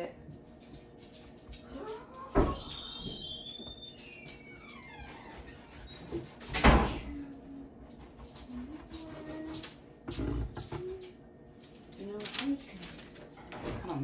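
A kitchen knife slicing soft bread on a wooden cutting board, with a few dull knocks as the blade meets the board, the loudest about seven seconds in. A high wavering voice is heard a few seconds in, and faint voices sit in the background.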